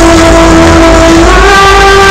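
Live electronic pop music in a concert hall, heavily overloaded in the audience recording. A long held note steps up in pitch a little past halfway, over a low bass rumble.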